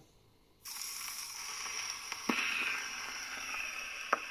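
Needle of a Columbia 204 portable gramophone set down on a spinning 1928 Imperial 78 rpm shellac record. After a brief hush the record's surface noise starts suddenly, a steady hiss with crackle and one sharp click about two seconds in, as the needle runs in the groove before the music begins.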